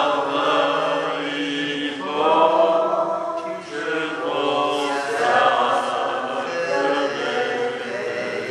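A group of voices singing a hymn together, holding long notes that change about every second or two.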